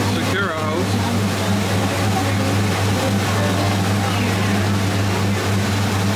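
Boat engine running with a steady low drone under a constant rush of wind and water as the boat moves along; a voice is heard briefly about half a second in.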